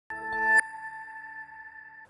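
Short electronic news-ident sting: a chord swells for about half a second, then cuts to a bright chime that rings on and slowly fades.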